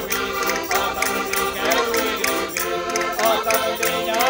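Portuguese concertinas (diatonic button accordions) playing a folk tune with a group of voices singing along, over a steady clicking beat.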